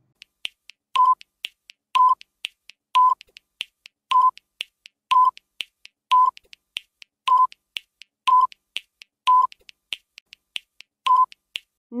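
Countdown timer tick sound effect: a louder short tick about once a second, about ten in all, with lighter, quicker clicks between them.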